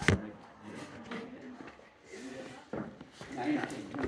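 Faint background talking among students, with a sharp knock right at the start and a couple of softer taps later.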